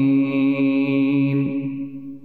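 A man's voice reciting the Quran in a chanted, melodic style. He holds a long, steady note on the last word of the verse, and it fades toward the end.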